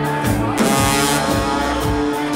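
Live ska band playing: drum kit, electric guitar and bass with brass over a regular beat. A cymbal crash comes about half a second in.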